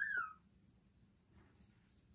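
A short, high animal call that rises and falls in pitch at the very start, then near silence.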